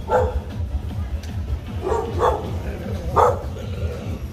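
Dogs barking: about four short barks, one right at the start, two close together around two seconds in, and one just past three seconds.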